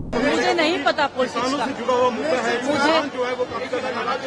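Speech: a woman answering reporters in a press scrum, with chatter from other voices around her.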